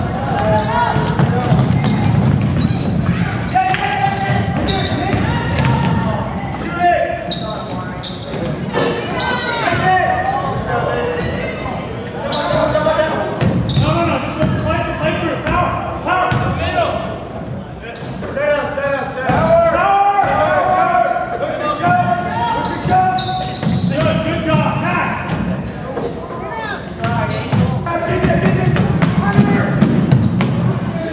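A basketball being dribbled on a hardwood gym floor during live play, with indistinct shouting from players and spectators in the gym.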